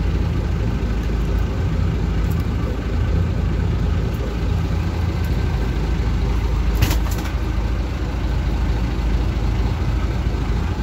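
Boat engine running with a steady low rumble, and a brief sharp clatter about seven seconds in.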